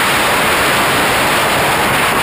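Steady, loud rush of freefall wind blasting over a body-mounted camera's microphone during a tandem skydive.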